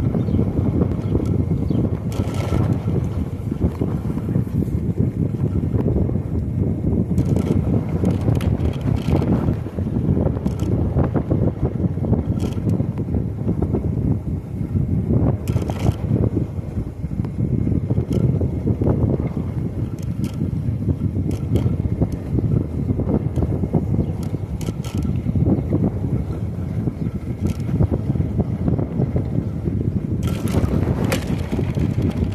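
Wind buffeting the microphone and tyre rumble on asphalt from a Lectric e-bike being ridden steadily, with scattered light clicks and rattles.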